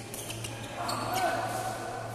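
Badminton rally: sharp strikes of rackets on the shuttlecock and players' footfalls on the court floor, with a louder patch of sound around the middle and a steady low hum underneath.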